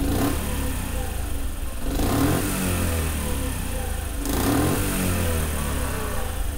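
Honda Super Cub 50 DX's air-cooled single-cylinder 49cc SOHC engine running at idle, revved up briefly and let back down three times: near the start, about two seconds in and about four seconds in. The engine is in good running order, with nothing odd in its note.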